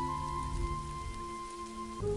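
Slow ambient meditation music of long held chords over a steady crackling rustle of dry autumn leaves. The chord changes at the very end.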